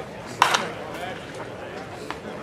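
A single sharp crack of a pitched baseball meeting the catcher's mitt or the bat, about half a second in, over a background of voices.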